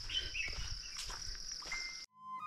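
Steady high-pitched drone of insects, with a few short bird chirps about half a second in.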